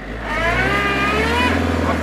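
A van's engine revving under load as it tries to drive out of mud, its wheels spinning. The engine comes up about half a second in and holds there.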